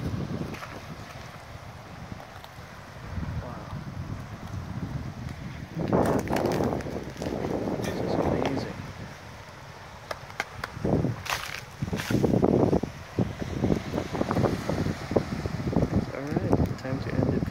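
Wind on the microphone over small waves washing onto a sandy, boulder-strewn shore, with louder rises about six seconds in and again from about eleven to thirteen seconds.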